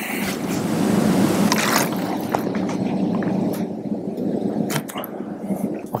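A loud rushing noise that swells about a second in, then slowly fades. Near the end comes a short sharp click of a golf club striking a chip shot off the turf.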